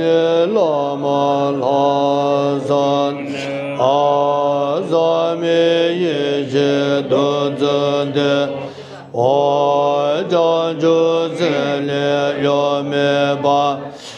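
A group of voices chanting a Tibetan Buddhist prayer in unison, holding long notes in a steady melodic line. Each phrase starts with a slide up in pitch. There is a short break for breath about nine seconds in.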